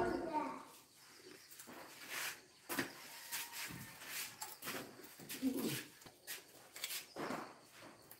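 Fairly quiet stretch of faint, indistinct voices, with scattered small clicks and rustles.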